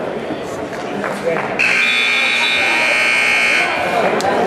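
Gym scoreboard buzzer sounding one steady, loud blast of about two seconds, starting about one and a half seconds in and cutting off abruptly. Crowd voices are heard under it and before it.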